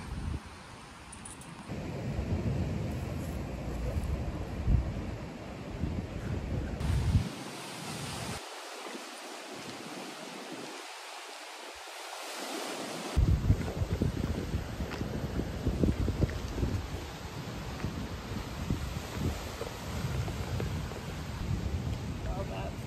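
Wind buffeting the microphone in gusts over the wash of lake water against shoreline rocks. For several seconds in the middle the rumbling gusts drop away, leaving a steady hiss, then they come back.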